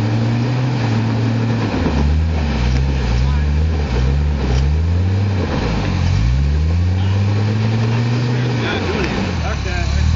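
Hummer SUV engine revving hard as it climbs out of a hole on a rocky trail. The pitch rises and falls four times in quick succession, then rises once more for longer and drops sharply near the end, settling back to a steady run.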